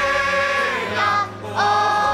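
A choir sings a slow song in long held notes. The sound dips briefly past the middle, and a new phrase begins about one and a half seconds in.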